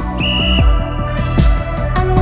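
Background pop music with a steady beat. A short, steady, high beep from the interval timer comes once, about a quarter second in, marking the end of the rest and the start of the next exercise interval.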